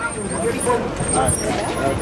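Several people talking over a van's engine running as it pulls up close by.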